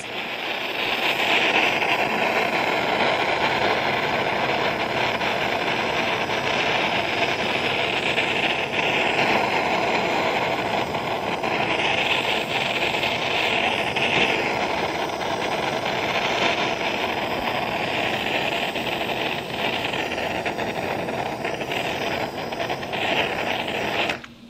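Handheld butane kitchen blowtorch burning with a steady hiss as it caramelizes the sugar topping on a crème brûlée. The flame cuts off suddenly at the very end.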